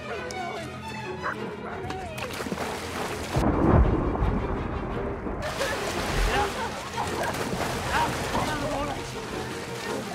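Horror film soundtrack of a river attack at night: water churning and splashing, with people gasping and crying out over tense music. About three and a half seconds in comes a deep rumble, the loudest sound here, and the sound goes muffled for about two seconds.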